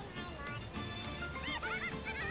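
Cartoon soundtrack: background music, joined in the second half by high, squeaky chipmunk voices chattering in quick rising-and-falling squeaks.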